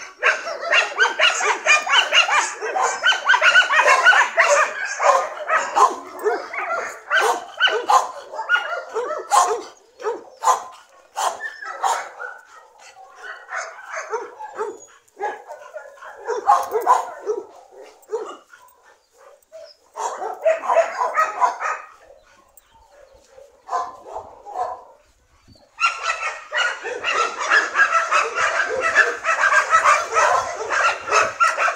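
A dog barking in rapid, dense runs: a long stretch of barks at the start, scattered shorter bursts with brief pauses through the middle, and another long run near the end.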